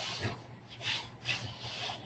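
A few short rubbing, hissing strokes, about four in two seconds.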